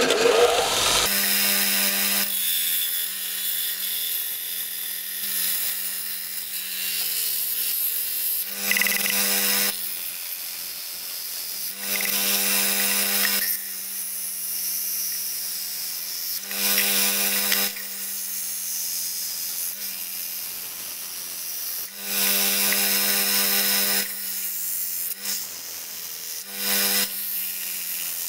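Electric belt sander running with a steady motor hum, its abrasive belt grinding a zinc casting down to powder. The motor starts about a second in, and a harsh grinding rasp swells about half a dozen times as the metal is pressed against the belt.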